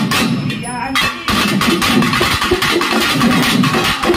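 Pambai twin drums beaten in a fast, dense rhythm, the strokes running almost continuously; after a short break about a second in, the drumming resumes and thickens into a rapid roll.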